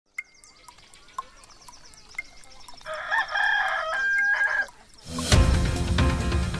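A rooster crowing once, from about three seconds in, over a fast ticking of about four ticks a second that goes with an on-screen countdown clock. A music jingle with a beat starts about five seconds in.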